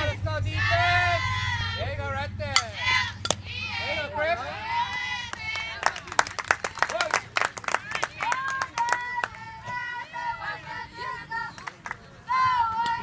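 High voices at a softball game calling out and chanting, some lines held on a steady pitch, with a burst of scattered hand claps between about six and eight seconds in.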